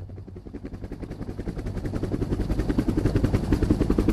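Helicopter sound effect opening a hip-hop track: a rapid, even rotor chop that fades in and grows steadily louder.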